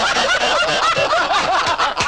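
A man laughing hard in a rapid run of short, high-pitched bursts, about four a second.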